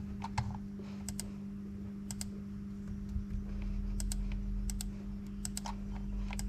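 Sharp clicks at irregular intervals, mostly in close pairs about a tenth of a second apart, like sporadic typing on keys, over a steady low electrical hum.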